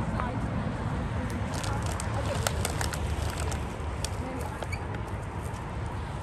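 Steady low rumble of roadside wind and highway traffic, with crinkling of plastic garbage bags and scattered clicks of litter being handled, thickest about two seconds in.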